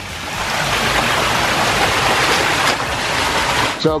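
Water from a constructed backyard stream cascading over rocks, a loud steady rush that swells in over the first half second and cuts off suddenly near the end.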